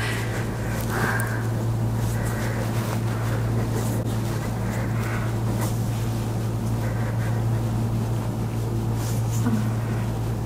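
A steady low hum of room background noise with no distinct event standing out.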